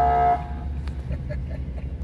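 A car horn gives one short toot, about half a second long, over the steady low rumble of a vehicle engine.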